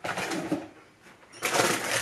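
Plastic packaging rustling and crinkling as bags of frozen pineapple chunks are pulled out of an insulated shopping bag, loudest from about one and a half seconds in.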